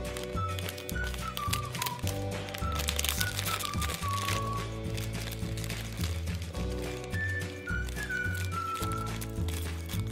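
Light background music: a simple stepping melody over a pulsing bass line. Under it, faint crinkling and clicking of a foil mystery bag and a plastic toy bag being cut open with scissors and handled.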